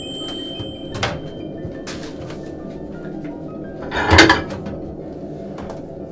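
Microwave oven at the end of its cycle: its beep tone rings on through the first second. The door latch then clicks open, and about four seconds in there is a louder clatter as the plate is handled and taken out.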